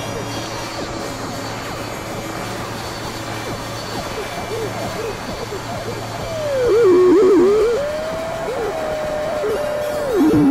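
Experimental synthesizer drone music: a low steady hum under many short wavering tones that glide up and down. About seven seconds in, a louder warbling tone swoops and bends in pitch, then settles into a steadier higher tone.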